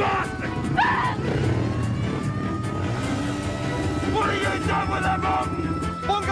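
Motorbike engine running at speed, with voices shouting over it around a second in and again about four seconds in, and music underneath.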